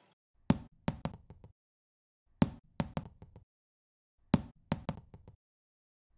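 Rubber ball bouncing on a hardwood floor. A loud first bounce is followed by quicker, fading bounces as it settles, and the whole sequence plays three times in a row about two seconds apart.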